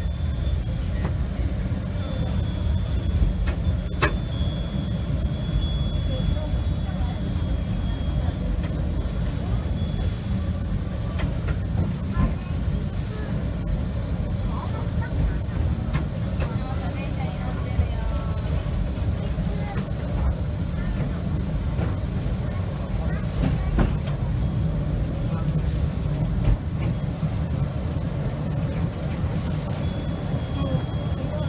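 Steady low rumble of a slow-moving steam-hauled excursion train, heard from the open coach coupled behind the tender of Class 8620 steam locomotive No. 8630, with people's voices faint in the background.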